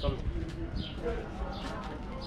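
A small bird chirping, a short high falling note repeated about once a second, over people's voices in the street.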